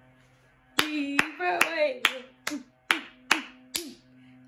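A woman claps about eight times, roughly two or three claps a second in a steady beat, starting about a second in, while laughing between the claps.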